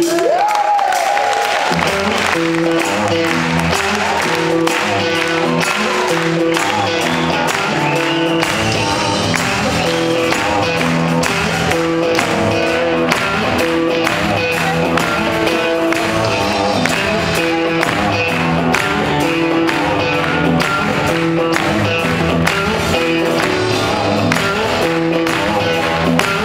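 Live band playing a steady, repeating rock groove on drums, bass and guitars, with audience applause near the start as a held sung note dies away. The deep bass joins about eight seconds in.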